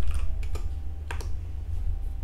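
A few separate keystrokes on a computer keyboard, a short entry being typed, over a low steady hum.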